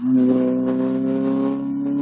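Citroen C2 rally car's engine pulling hard in the next gear just after an upshift, its pitch climbing slowly and steadily as the car accelerates away.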